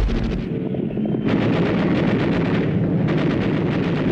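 Anti-aircraft machine-gun fire in a rapid, continuous stream of shots over a low rumble, as a warship is attacked from the air.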